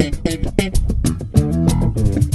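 Electric bass guitar playing a busy line of quick notes in a band mix, with sharp percussive hits throughout.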